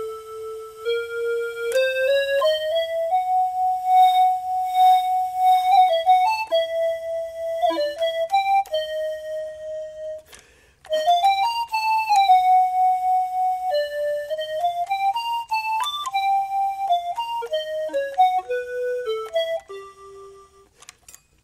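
Yamaha YDS-150 digital saxophone played on its C12 preset, one of its non-saxophone instrument voices, with a keyboard-like tone. It plays a single melodic line of held and quick notes, with a break of about a second near the middle.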